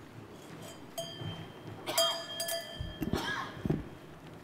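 Knocks and heavy low thumps picked up by the podium microphone as it is handled and people move about the stage, with a short ringing clink about two seconds in.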